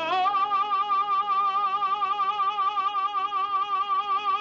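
An operatic tenor voice rises into a high note just after the start and holds it with a steady, even vibrato.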